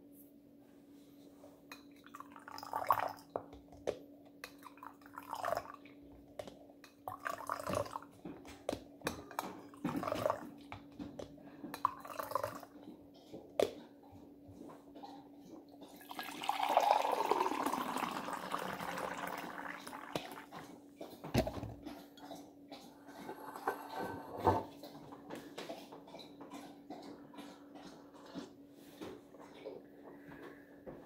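Tea poured from a glass teapot into a ceramic mug about 16 seconds in: a splashing stream lasting about four seconds, its pitch falling as it runs. Before it come short clinks and small liquid sounds every couple of seconds, over a steady low hum.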